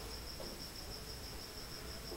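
A cricket chirping in the background: a steady, high-pitched, rapidly pulsing trill.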